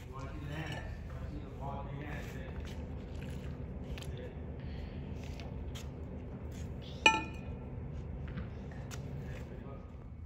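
Tossed balls in a catching drill: a steady low room hum with faint voices, a few light taps, and one sharp clink with a short metallic ring about seven seconds in as a ball strikes something hard.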